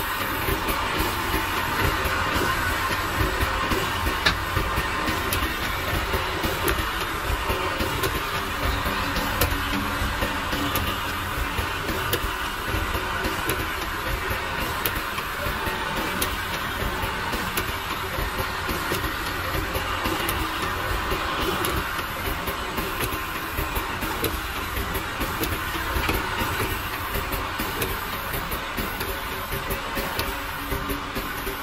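Automatic bottle filling, capping and labeling line running. A steady mechanical hum and buzz, including the vibratory cap-sorting bowl, is joined by frequent light clicks of plastic bottles and caps.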